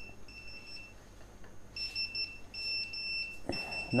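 A high-pitched electronic beep sounding in repeated pulses, each about half a second to under a second long with short gaps between.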